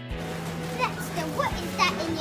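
Young children's voices: a few short, high-pitched calls and chatter, over a steady low hum.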